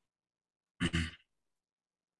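A person's short sigh into a call microphone, about a second in and lasting about half a second.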